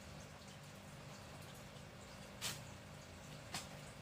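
Quiet room noise with a faint steady low hum, broken by two short sharp clicks about a second apart in the second half.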